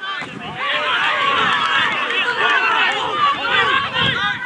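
Players and spectators at an amateur football match shouting and calling over one another, many voices at once and no single one clear.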